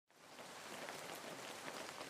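Faint, even crackling hiss that fades in from silence in the first half second.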